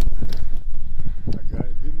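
Men's voices, partly muffled, over a low rumble, broken by several sharp irregular knocks and clatter.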